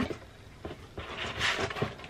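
String being drawn around and under a stack of cardboard mailer boxes as they are handled and tipped up: a soft scraping rustle of twine on card from about a second in, with a few light clicks.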